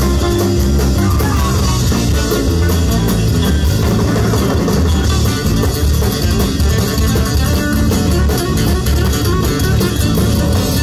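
Live rock band playing a loud instrumental passage with no vocals: electric and acoustic guitars over bass guitar and drum kit.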